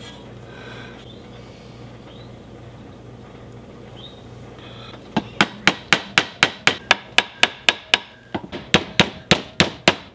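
A small hammer tapping a pin through the wooden handle scales and the steel tang of a large cleaver: after a quiet first half with a faint hum, a fast, even run of sharp taps, about four a second, with a brief pause about three seconds into the run.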